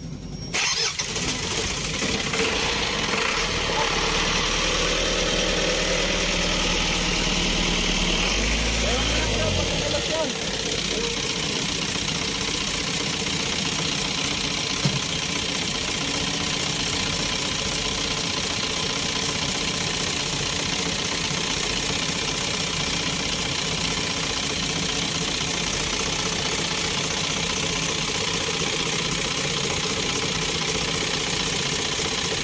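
Truck diesel engine cranking and catching about half a second in, then running; it runs a little harder until about ten seconds in, then settles to a steady idle. It is being run with fresh engine oil so the new oil fills the new filter and circulates before the oil level is checked.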